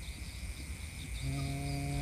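A steady high insect drone, typical of crickets at night. About a second in, a man gives a drawn-out "hmm" held at one steady pitch that runs straight into speech.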